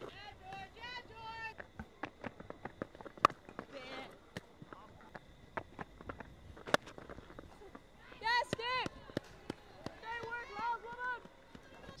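Open-air cricket ground ambience: high voices shouting short calls across the field in several bursts, with scattered sharp knocks, one of them loud, a little over three seconds in.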